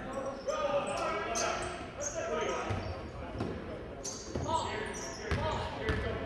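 Basketball being dribbled on a hardwood gym floor during play, the bounces ringing in a large gym over voices and shouts from the crowd.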